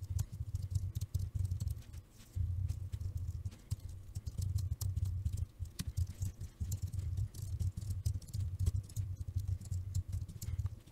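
Fast typing on a computer keyboard: a dense run of key clicks with brief pauses about two and four seconds in.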